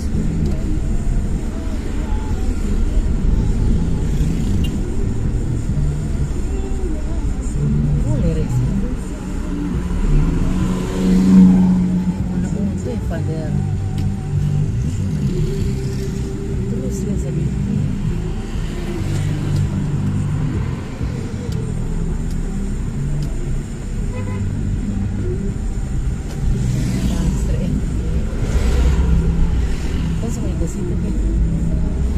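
Car driving on a paved road, heard from inside the cabin: a steady low rumble of engine and tyres with muffled voices under it. Now and then other traffic passes with a brief whoosh, loudest about eleven seconds in.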